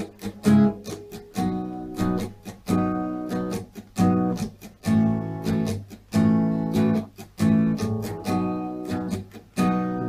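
Acoustic guitar strummed down and up through barre chords. Ringing chords are broken by short, muted percussive strums, and the chord shape changes during the strumming.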